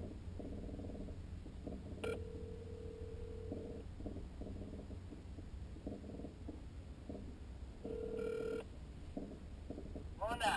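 A phone call ringing out: a faint, steady ringback tone sounds twice, for under two seconds about two seconds in and briefly again near the end, over a steady low hum.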